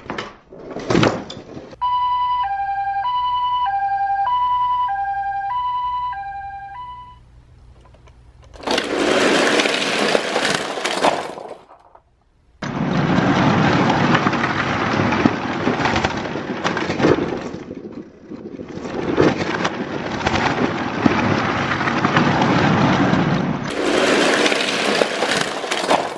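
A two-tone hi-lo siren in the Japanese ambulance style alternates a high and a low note, each about a third of a second long, for about five seconds. After it, a mass of die-cast toy cars clatters and rattles down a wooden ramp and into toy blocks, in long stretches of dense clattering.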